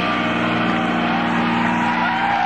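A rock band's electric guitar and bass holding a sustained chord that rings on as a steady drone, typical of the final held chord of a song in a live concert.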